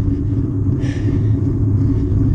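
Steady low rumble of wind buffeting a bike-mounted camera's microphone and a road bike's tyres rolling on coarse tarmac, with a brief hiss about a second in.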